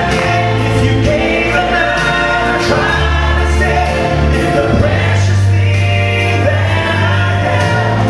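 Christian gospel vocal trio, a woman and two men, singing through handheld microphones and stage speakers over instrumental accompaniment. A low bass line shifts note every couple of seconds.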